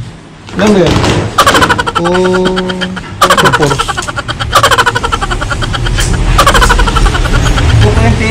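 A man's voice speaking, with some drawn-out, wavering syllables.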